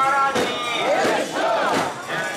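Many mikoshi bearers shouting their carrying chant together, overlapping voices with held and rising-and-falling calls.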